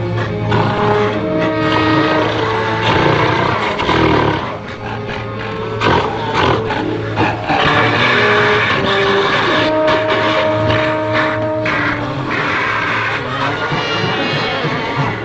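Film-score music with animal roars mixed over it.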